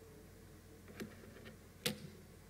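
Two clicks from a laptop being operated, over a faint steady hum: a light one about a second in and a sharper, louder one near the end.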